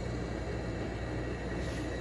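Steady low hum of air-conditioning running in a small room, even and unchanging.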